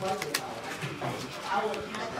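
Low, indistinct voices of people talking, with a few light clicks of sleeved playing cards being handled on a playmat.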